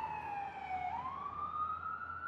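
Police siren wailing: its pitch falls slowly, then turns and rises again just before halfway through.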